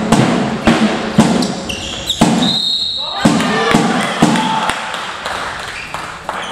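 Echoing sports-hall din during a handball game: sharp thuds repeat every half-second to a second under shouting voices, with a brief high squeak about halfway through.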